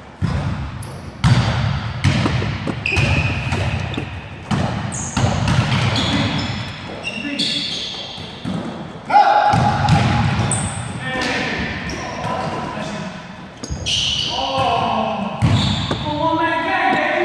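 Basketball bouncing and thudding on a hardwood gym floor during a pickup game, a string of sharp impacts ringing in a large echoing hall, with players' voices calling out in between.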